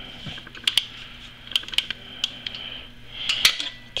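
Wrench and socket clicking and clinking on metal in short irregular bursts as the swingarm pivot locknut is turned down a little at a time, the loudest cluster of clicks near the end.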